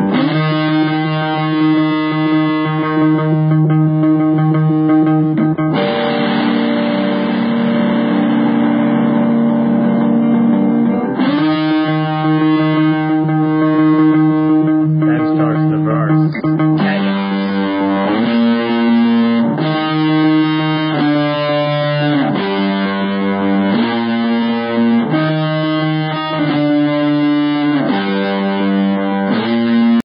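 Guitar playing a chord progression: long ringing chords that change about every five to six seconds, then from about halfway a rhythmic pattern of shorter, repeated chords.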